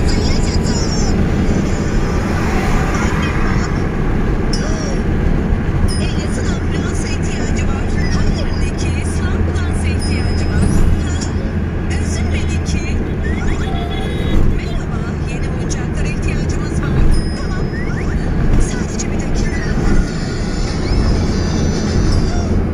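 Steady low drone of a car's engine and tyres on the road, heard from inside the cabin while driving, with a voice and music over it.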